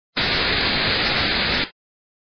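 A loud burst of static hiss, about a second and a half long, cutting in and out abruptly.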